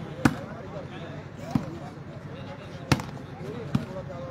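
A volleyball struck by hand four times during a rally, sharp slaps roughly a second apart, the first and third the loudest.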